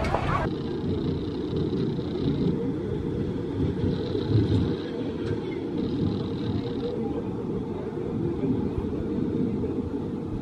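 Muffled, steady low rumble of a suspended powered roller coaster train running along its steel track, with almost no high end to the sound.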